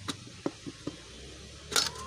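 Metal kettle lid being lifted off a kettle of hot water: a few light clicks, then a sharper metallic clink near the end.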